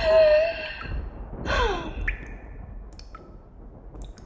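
A woman's laugh tailing off: a short held vocal tone, then a falling sigh about one and a half seconds in.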